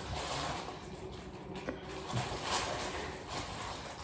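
Faint handling noise of a plastic takeaway tub, light rubbing and scraping as its lid is worked open.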